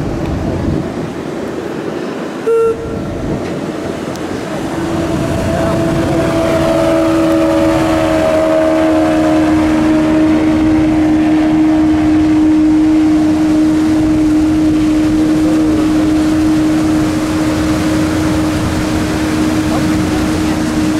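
Outboard motorboat running at speed as it passes close by, its engine tone dropping slightly in pitch as it goes past and then holding steady, over a constant rush of water and wind. A short beep about two and a half seconds in.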